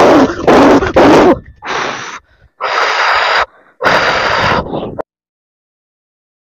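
A person breathing loudly and forcefully in four separate noisy breaths, each about half a second to a second long. The sound cuts off suddenly about five seconds in.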